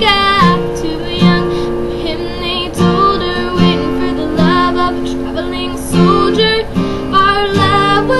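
A young woman singing a slow country ballad, accompanying herself on an acoustic guitar.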